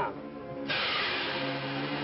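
Rushing hiss of a spaceship's rocket-exhaust sound effect for a landing, starting suddenly about a second in and holding steady, over background music.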